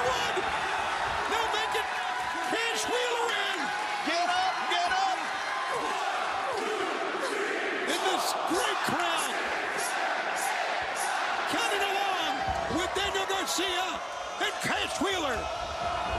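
Pro wrestling match heard against arena crowd noise: repeated sharp slaps and thuds of strikes and bodies hitting the ring canvas, with voices shouting over the crowd.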